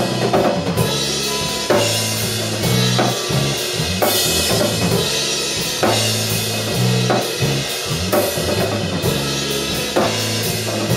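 A three-piece rock band playing an instrumental math-rock piece live: a drum kit with cymbals, an electric bass holding low notes that change every second or so, and an electric guitar.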